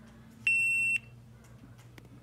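GoPro Hero 8 Black giving one high, steady electronic beep about half a second long, a little way in, as its screen is tapped. It is the camera answering a command it will not carry out while it reports its SD card busy.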